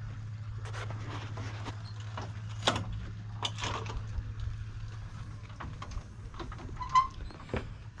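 Footsteps on a yacht's teak-slatted boarding gangway, irregular knocks as someone walks across it onto the stern, over a steady low hum.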